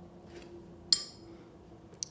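A single short clink with a brief high ring about a second in, like a paintbrush tapping the rim of a glass water jar, over a faint steady room hum.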